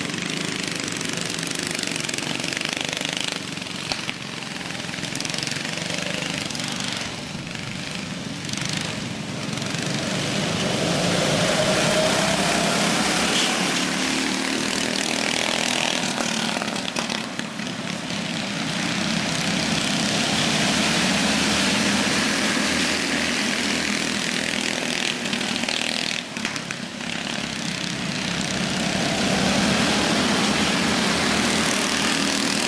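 Several small go-kart engines racing at full throttle on a dirt track, swelling and fading as the pack passes, with one engine's whine rising in pitch about ten seconds in.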